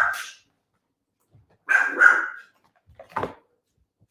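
A pet dog barking off-camera indoors: a few separate barks, the loudest about two seconds in.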